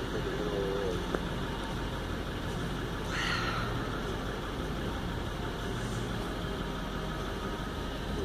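Car running slowly along the road, heard from inside the cabin: a steady engine hum and road noise. A brief hiss about three seconds in.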